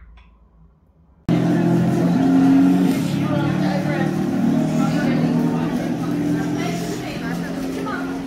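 A recorded car engine sound, running steadily with small changes in pitch, playing from a life-size LEGO Aston Martin DB5 display car, with people's voices over it. It starts suddenly about a second in, after near silence.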